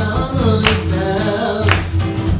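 A man singing with acoustic guitar accompaniment, the guitar strummed with a sharp accent about once a second under held, bending sung notes.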